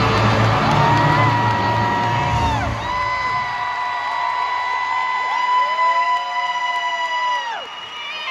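A stage musical number ending: the band's final chord with heavy bass dies away about three seconds in, under high held whoops and cheering from the audience, each cry rising at its start and falling away at its end.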